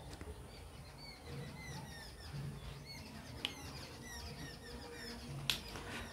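Faint birds chirping: many short, quick, falling calls scattered throughout, with two faint clicks in the second half.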